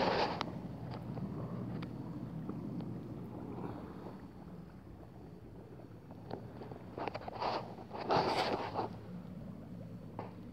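Water moving around a wooden canoe on a shallow, muddy river, with wind on the microphone. A few louder rushes of noise come near the start and again about seven and eight seconds in.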